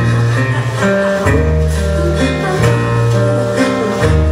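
Live blues band playing a passage led by electric guitar, over upright double bass notes and drums, with little or no singing.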